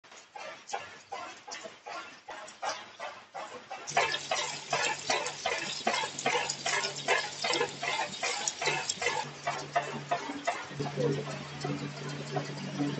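Corn curls (Kurkure) extruder line running: sharp clicks repeating about three times a second. Just before four seconds in, the sound gets louder and a steady motor hum joins the clicking.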